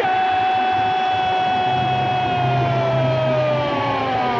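Arena goal horn sounding one long note, its pitch sagging lower over the last second or two, signalling a goal, over loud crowd noise.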